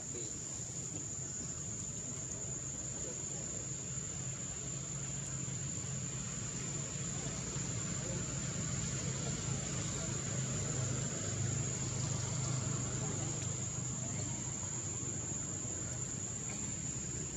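Steady, unbroken high-pitched insect drone in the forest canopy, with a low continuous hum underneath.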